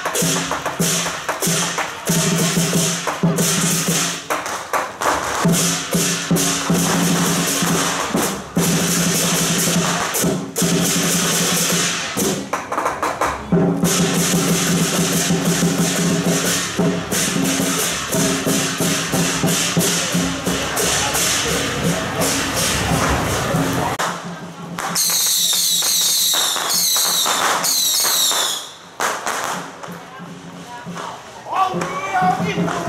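Lion dance percussion band playing: drum beats and cymbal crashes over a steady pitched ringing, in a loud, busy rhythm. Near the end the low part drops away and three high falling whistles sound one after another.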